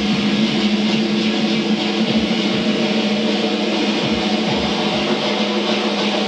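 Live band music: sustained keyboard and synthesizer chords over a steady low drone, with a few deep drum thumps.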